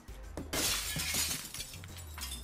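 Glass shattering: a sudden crash about half a second in, followed by a second of tinkling shards that die away. It is the sound of a carelessly tossed package's contents breaking.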